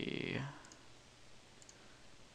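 Two faint computer mouse clicks about a second apart, over quiet room tone.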